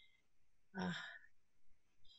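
A single short hesitant 'uh' from a speaker's voice about a second in, otherwise near silence.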